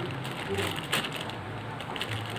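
Thin plastic bag crinkling and crackling as hands open it to take out a pair of earphones, with irregular small crackles and a sharper one about a second in.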